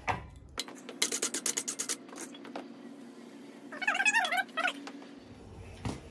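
A steady low hum, with a burst of rapid clicking about a second in and a short wavering high-pitched cry near four seconds in.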